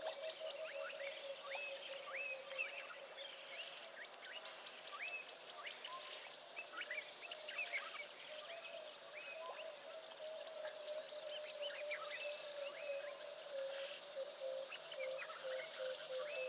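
Many birds calling together: a dense chorus of short chirps and whistled notes, over a steady pulsing low trill that is stronger near the start and near the end.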